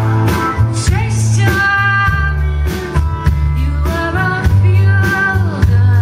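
Live band performance of an alt-country rock song: electric guitar and band playing, with a woman singing lead.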